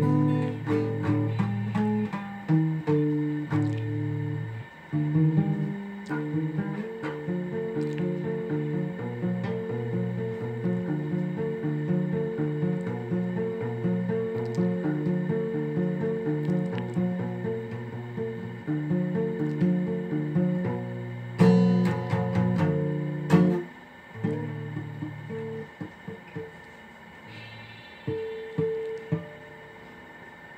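Guitar played as a piece of plucked notes, a low bass line moving under a higher melody. About three-quarters of the way through it rises to a few louder strummed chords, then stops abruptly, leaving a few scattered single notes.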